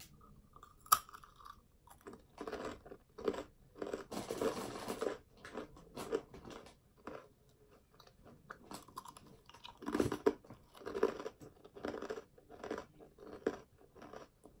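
A person biting into a crunchy snack, with a sharp crunch about a second in, then chewing it with irregular crunches.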